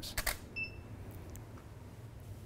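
Canon DSLR shutter firing once for a flash exposure, a quick double click. About half a second in there is a short high beep.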